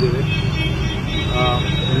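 Steady low rumble of street traffic, with a man's voice breaking in briefly a little after halfway.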